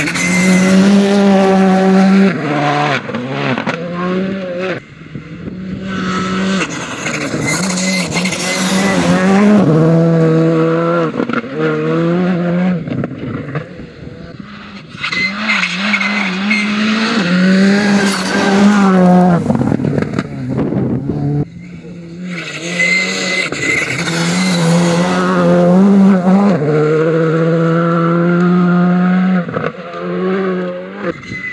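Skoda Fabia R5 rally cars' turbocharged four-cylinder engines driven hard on gravel in about four passes, the engine note climbing and stepping down with each gear change and lift. Loose gravel sprays from the tyres as the cars slide through the corners.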